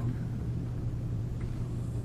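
Room tone: a steady low hum with faint rumble.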